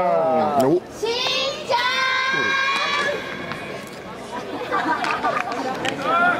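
Shouted cheering voices from a youth baseball bench or stands, with one voice holding a long high-pitched call for about two seconds, over crowd chatter.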